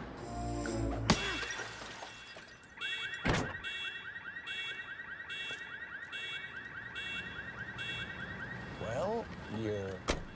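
A baseball bat smashing a parked car's windshield: a loud shattering crash about a second in and a second strike about three seconds in. The car's alarm then goes off, a fast-warbling electronic tone with repeating beeps about twice a second, stopping shortly before the end.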